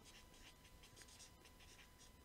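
Faint scratching of a felt-tip highlighter writing on a paper notepad, a quick series of short pen strokes.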